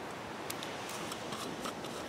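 Faint metallic ticks and light scraping as the brass screw cap is twisted off a Trangia-style alcohol burner, over a steady low background hiss.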